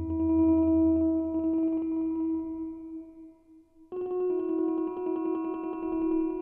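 Electric piano notes played by the PlantWave app from the plant's biodata: a held note that dies away about three seconds in, then a new note that starts about a second later and rings on.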